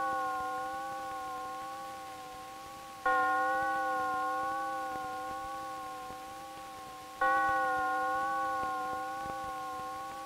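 A bell tolling slowly: each stroke is a single note with several overtones that rings and fades over about four seconds. The first stroke is still ringing at the start, and new strokes come about three seconds in and about seven seconds in.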